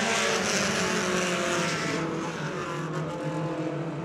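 A pack of Pony Stock race cars running under power through a turn: several engines together in a steady blend of notes, with a hiss over them that fades about halfway through.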